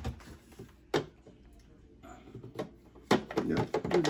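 Plastic ice maker tray being slid onto its mounting screws in a refrigerator's ice maker box: a few sharp plastic clicks and knocks, then a denser clatter of handling near the end.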